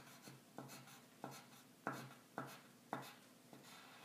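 Red pencil scratching across paper in short, quick strokes, crossing out entries on a printed list, about two strokes a second; faint.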